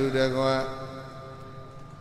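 A man chanting a Buddhist chant on a long, steady held note. The note fades away after under a second into a quiet pause.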